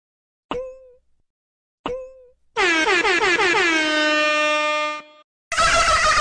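Added cartoon sound effects: two short pitched blips with a quick dip in pitch, about 1.4 s apart, then a loud horn-like tone that slides down in pitch and holds for about two and a half seconds before cutting off. Near the end a loud, noisy engine-like sound with steady tones starts.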